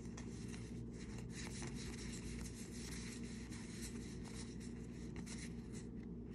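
Trading cards being slid and shuffled through the hands: faint, scattered card-on-card scrapes and soft flicks as they are sorted one behind another. A low steady hum runs underneath.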